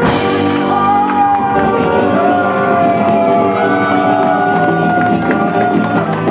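Live rock band of alto saxophone, electric guitars and drums holding a long sustained chord, opened by a cymbal crash: the song's closing chord ringing out.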